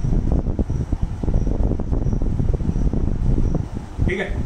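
Steady low rumbling noise of air blowing across the microphone, with faint high ticks recurring at a regular pace, under no speech.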